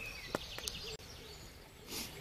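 Faint outdoor ambience with small birds chirping in the distance and a few short clicks. The background changes abruptly about a second in.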